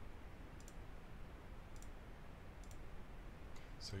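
Four faint computer mouse clicks, roughly a second apart, over a low steady hum, as the video player is skipped ahead.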